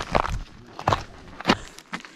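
Footsteps on dry, brittle mineral crust: about four steps, each a short sharp sound, at an even walking pace.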